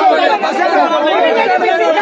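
Crowd chatter: many people talking and calling out over one another at once.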